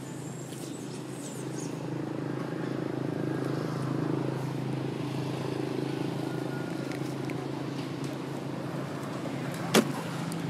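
A low, steady engine drone that swells a little towards the middle and eases off again, with one sharp click just before the end.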